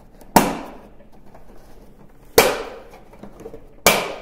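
Plastic radome clips on a PMP 450d dish antenna snapping into place as the radome is pressed on. Three loud, sharp clicks, one to two seconds apart, each dying away quickly.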